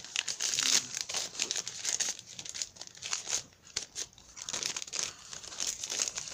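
Gift packaging being handled and crinkled: a run of irregular rustles and crackles, with some tearing.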